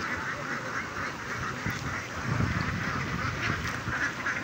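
A flock of young domestic ducks quacking, many calls overlapping in a steady din.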